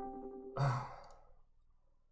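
The tail of a voice-call app's ringing tone, a chord of steady electronic notes, stops about half a second in. A man then lets out a breathy sigh, half-saying "so".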